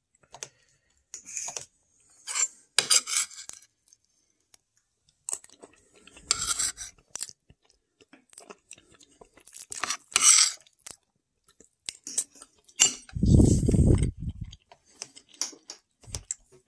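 A metal spoon scraping and clinking on a dinner plate in short, scattered bursts, with eating sounds between them. Near the end comes a louder low rumble lasting about a second and a half.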